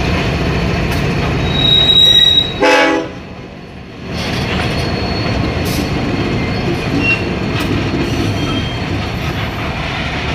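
Ferromex freight train locomotives and cars rolling past with steady wheel-and-rail rumble, a high steady wheel squeal about two seconds in. A short loud pitched blast follows just before three seconds, then the noise drops away for about a second before the rolling resumes.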